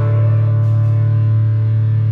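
Distorted electric guitars, amplified, holding one sustained chord that rings on steadily and unchanged, without drums.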